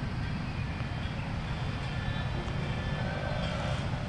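Outdoor ambience of distant road traffic: a steady low rumble, with faint high chirps over it.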